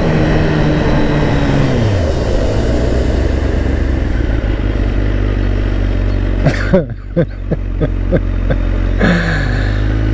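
Kawasaki ZX-10R inline-four engine heard from the rider's seat, its pitch falling over the first two seconds as the bike slows, then running steadily at low revs. A run of short sharp sounds comes around seven seconds in, and the engine note falls again near the end.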